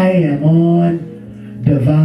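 A man's voice singing long, held notes into a microphone. It dips away about halfway through and comes back before the end.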